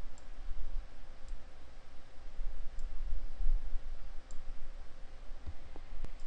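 A few faint, sparse computer mouse clicks, about four over the stretch, as the software is operated, over a low, uneven microphone rumble.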